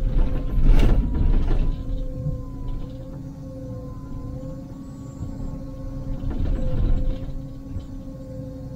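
Liebherr 904 wheeled excavator heard from inside the cab: a steady engine and hydraulic whine, with the bucket scraping and knocking against rock. The loudest scraping and knocks come in the first second and a half, sharpest just under a second in, and the scraping returns about six and a half seconds in.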